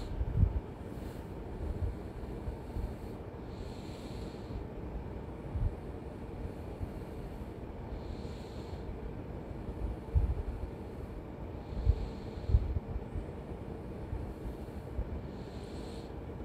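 A person breathing close to the microphone, a soft breath every few seconds, over steady low background noise, with a few low bumps.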